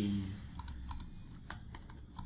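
Computer keyboard keystrokes: a few scattered key clicks, then a quick run of several in a row.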